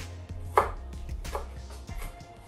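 Kitchen knife chopping onion on a wooden cutting board: about four separate chops, the loudest about half a second in.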